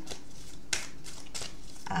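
A deck of oracle cards being shuffled by hand: a few short, crisp flicks of the cards, the sharpest a little past halfway.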